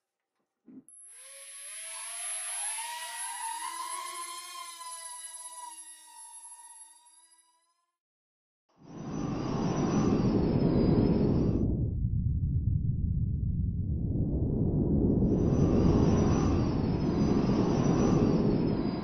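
Air Hogs Millennium Falcon toy quadcopter's small rotor motors whining as they spin, several pitches rising and shifting separately as power moves between the fans, winding down after about seven seconds. From about nine seconds a loud, steady rumbling roar starts, dips for a few seconds, then swells again.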